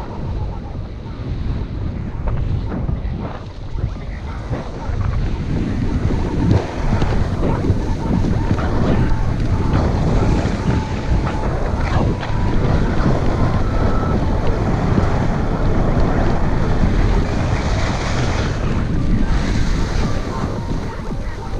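Wind rushing over an action camera's microphone during a fast downhill run, mixed with the hiss and scrape of edges carving across packed, groomed snow.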